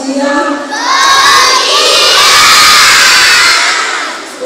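A crowd of children shouting and cheering together, swelling to its loudest in the middle and dying away near the end.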